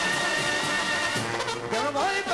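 Mexican banda brass section playing live: trumpets and trombones holding a long chord over low tuba notes, with rising notes near the end.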